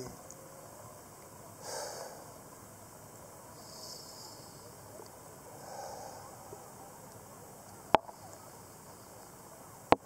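A man breathing slowly and softly, one breath about every two seconds. Two sharp clicks near the end are the loudest sounds.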